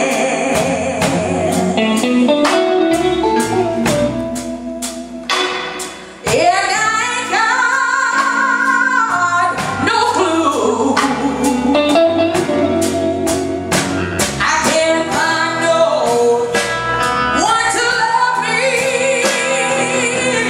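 Live blues band: a woman sings lead over electric guitar and drums, holding one long, bending note from about six seconds in to about ten.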